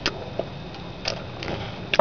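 Quiet sipping of root beer through a straw from a plastic bottle: a few soft, separate mouth and straw clicks over a low steady hum.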